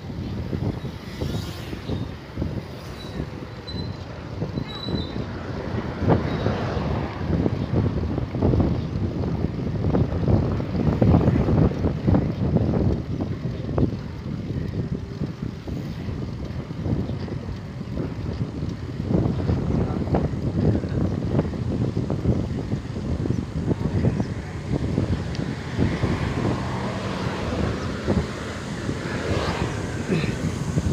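Wind buffeting the microphone of a phone riding on a moving bicycle, a gusting rumble that swells and fades, mixed with tyre and road noise.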